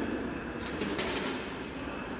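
Steady background hum of a large exhibition hall, with a brief rustling hiss about a second in.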